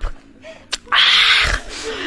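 A single sharp hiss lasting about half a second, beginning about a second in, after a faint click.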